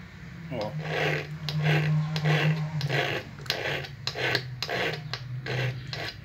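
Small hand file pushed in short forward strokes along the inner edge of a pair of steel nippers, sharpening the edge. The file rasps about twice a second in a run of about ten strokes.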